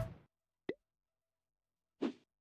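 Background music cut off and fading out, then one short, quick-rising plop sound effect about two-thirds of a second in, from the channel's logo animation.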